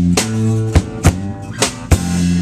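Small live band playing an instrumental stretch: strummed acoustic-electric guitar over electric bass and drum kit, with five sharp drum hits spread through it.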